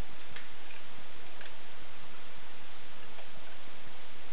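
A steady hiss with a few faint, scattered clicks.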